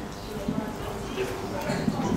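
Quiet, indistinct voices talking in a meeting room, with some knocks and footsteps as people move about the speakers' table.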